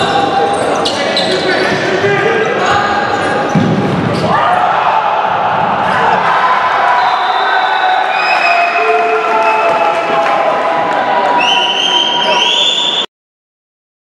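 Futsal play in a sports hall: several players' voices shouting and calling out, echoing in the hall, with the ball thudding on the wooden court and short rising shoe squeaks near the end. The sound cuts off suddenly about a second before the end.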